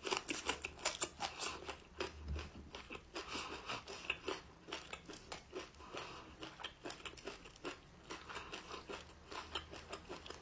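Close-miked crackling and tearing of the red wax coating being peeled off a small round cheese: many faint, quick crackles and clicks.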